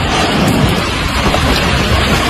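Tornado winds heard through a mobile phone's microphone: a loud, steady rush of wind with low rumbling buffeting on the microphone.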